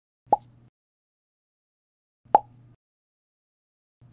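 Two short pop sound effects, about two seconds apart, each a quick plop with a brief low tail, accompanying an animated logo intro.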